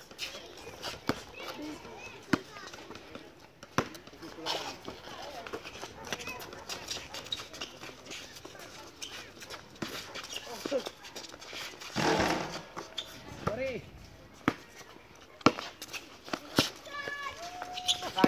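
Basketball bouncing on an outdoor concrete court: sharp, irregular knocks of dribbles and passes, with players' distant shouts and calls. A louder burst of noise comes about twelve seconds in.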